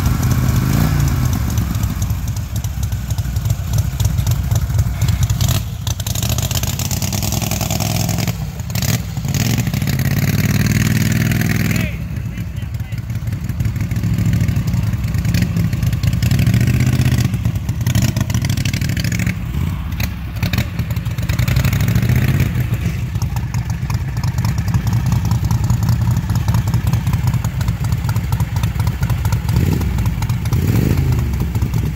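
Lifted Craftsman lawn tractor's engine running and revving under load in deep mud, its pitch rising and falling repeatedly, with a long climb that cuts off sharply about twelve seconds in.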